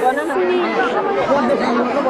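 Several voices talking over one another in overlapping chatter.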